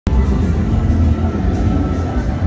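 Loud bass-heavy music from an outdoor sound system, the deep bass rumbling steadily under a fainter, thin upper part.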